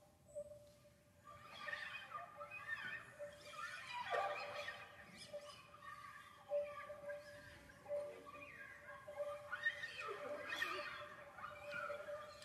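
Classical guitar ensemble with Iranian setar playing a quiet, sparse passage: a held note in the middle range under sliding, wavering pitches that swell and fade twice.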